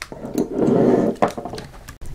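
Handling noise of a fountain pen being picked up from a wooden desk: about a second of rubbing, with a few small clicks and knocks.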